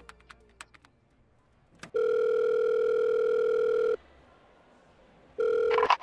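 Telephone ringback tone heard through a payphone handset while a call rings out: a few light clicks, then one steady tone about two seconds long. After a pause of about a second and a half, the tone starts again near the end and breaks off after half a second.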